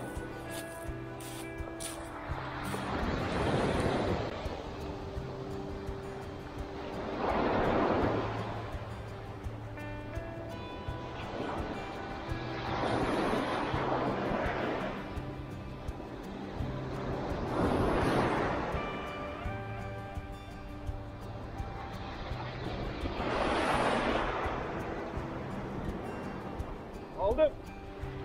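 Sea waves breaking and washing up a pebble beach, swelling five times about five seconds apart, under steady background music.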